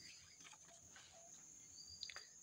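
Near silence: room tone with a faint, steady high-pitched hiss.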